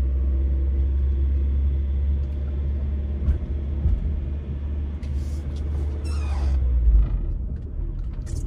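Car driving slowly, heard from inside the cabin: a steady low road-and-engine rumble that eases off near the end, with a few light knocks along the way.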